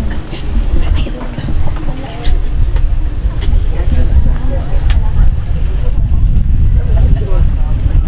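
Wind buffeting the microphone, a loud, uneven low rumble, with faint indistinct voices beneath it.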